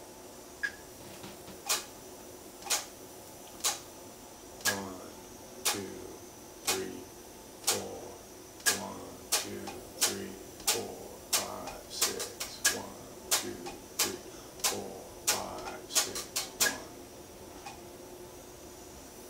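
Electric guitar picked in short, sharp attacks, about one a second at first, then closer together with quick groups of three in the second half. It is a demonstration of a 6-on-4 polyrhythm whose last attack is subdivided into a group of three.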